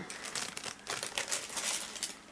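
Clear plastic bag crinkling as it is handled, an irregular crackling that runs throughout.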